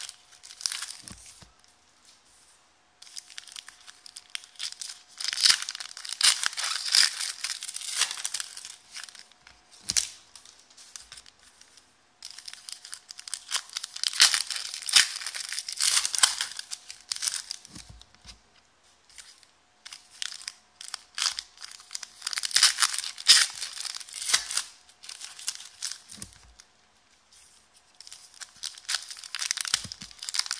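Foil wrappers of trading card packs being torn open and crinkled by hand. The crackling comes in several bursts a few seconds long, with short pauses between them.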